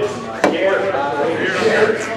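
A single sharp knock about half a second in, followed by a man's wordless vocal sounds as he spits something out of his mouth into his hand.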